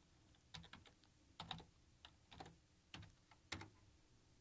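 Faint keystrokes on a computer keyboard: about eight separate light taps spread unevenly over a few seconds as a short word is typed.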